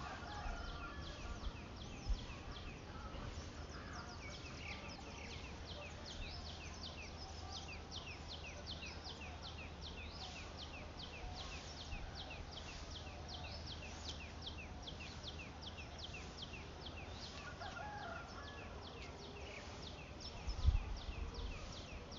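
Small birds chirping over and over, a run of short falling chirps about three a second, over a low steady hum, with a low thump near the end.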